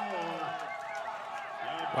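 Indistinct voices and chatter over a background of crowd noise at an outdoor field.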